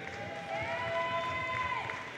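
A spectator's single long, high-pitched cheering call, rising and then held for about a second, over faint crowd noise in a hall.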